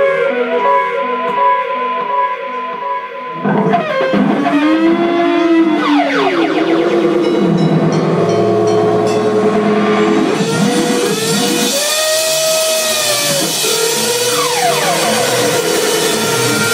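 Amplified electric guitar played live: a short repeated figure, then from about three and a half seconds in, swooping pitch glides up and down. A wash of noise builds from about ten seconds in.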